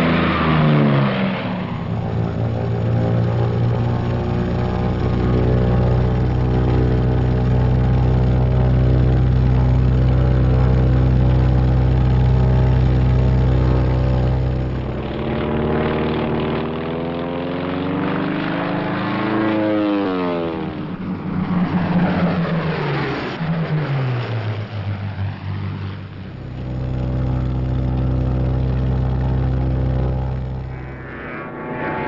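Piston-engine propeller aircraft droning steadily. From about halfway the pitch rises and then drops sharply, twice over, as planes dive and pass by, before a steady drone returns near the end.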